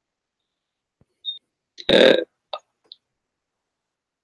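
A person's single short throaty sound about halfway through, with a few faint clicks and blips around it, against dead silence on the call line.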